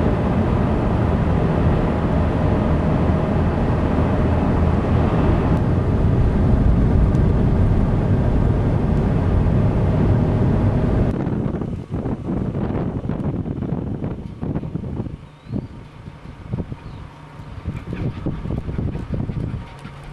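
A car driving along a rural road, with steady engine and tyre noise. About 11 seconds in, this gives way abruptly to gusty wind on the microphone.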